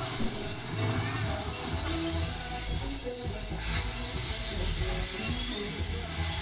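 High-pitched metallic squeal from a spinning funfair ride: a short loud burst just after the start, then a steady squeal from about two and a half seconds in, over fairground music and voices.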